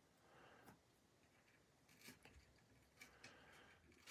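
Near silence: room tone with a few faint, short ticks and rubs.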